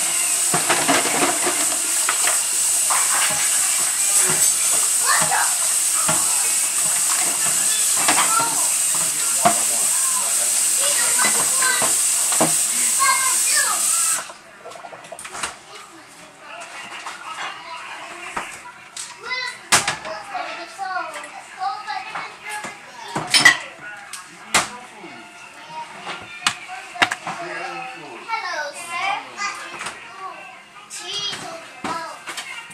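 Kitchen sink tap running in a steady hiss while a plastic cutting board is rinsed under it, shut off suddenly about halfway through. Light kitchen clatter and knocks follow.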